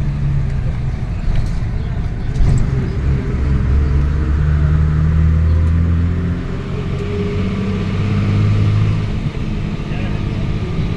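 Bus engine running with road noise, heard from inside the bus as it drives, the engine note shifting pitch a few times.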